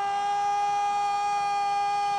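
A football commentator's long held shout, sustained at one steady pitch.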